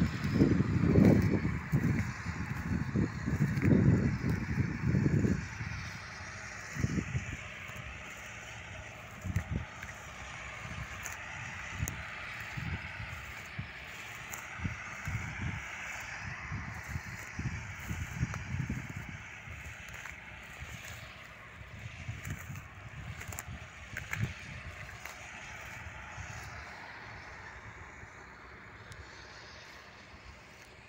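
Wind gusting against the microphone, with heavy rumbling buffets in the first five seconds and weaker, scattered gusts after that, over a steady hiss.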